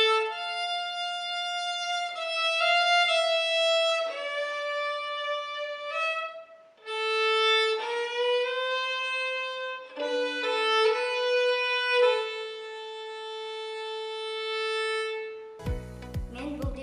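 A bowed string instrument playing a slow solo melody of long held notes, phrase by phrase with short breaks between phrases. Just before the end it gives way to a different sound with a low, regular beat.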